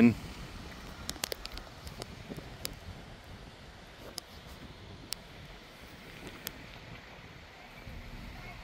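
Quiet outdoor ambience with light wind on the microphone, broken by a few faint, sharp clicks: a small cluster about a second in, then single ones every second or so.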